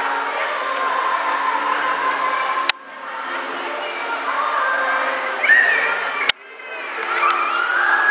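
Children's school choir singing, voices holding long notes together. Twice a sharp click cuts the sound to a brief dip before it swells back.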